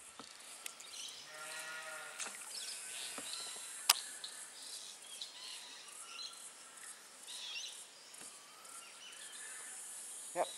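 Quiet creek-side ambience with scattered high chirps of birds calling. About a second in there is one steady, low, drawn-out call lasting about a second, and about four seconds in a single sharp click.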